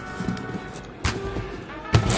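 A hand pressing and smoothing a printed transfer sheet onto a Cricut cutting mat, with a single sharp knock about a second in and another just before the end, over faint background music.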